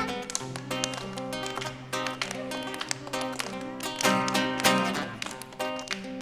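Acoustic guitar strummed and plucked, playing the accompaniment of a Christmas song.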